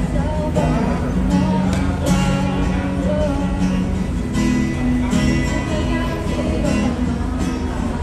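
Acoustic guitar strummed in a steady rhythm and played through a small amplifier, with a woman singing over it.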